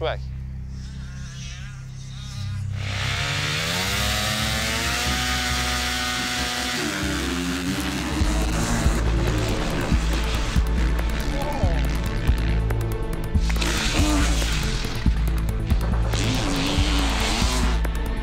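Motocross motorcycle engines revving hard on a track, one long rev climbing in pitch about three seconds in and dropping away near seven seconds. Background music runs under them, with a heavy steady bass from about eight seconds on.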